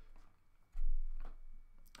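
A low rumble on the microphone from about a second in, the loudest thing here, with a few faint clicks around it.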